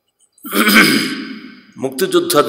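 A man loudly clearing his throat close to the microphone, starting about half a second in and fading over about a second.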